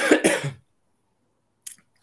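A man with a sore throat coughing, a short burst of a few quick coughs at the start, heard over a video call.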